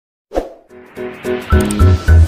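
Silence, then a sudden pop about a third of a second in, opening a short animation jingle: quick plucked-sounding notes, joined by heavy bass beats from about a second and a half in.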